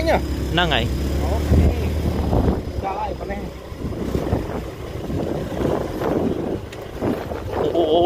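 Motorbike engine running as the bike rides along a bumpy dirt trail, with wind rushing on the microphone. A steady low engine hum for the first couple of seconds gives way to rougher, uneven rumbling.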